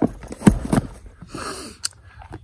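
Handling sounds of plastic disc golf discs being put into a bag: a few dull knocks about half a second in, then a short breathy rustle and a small click near the end.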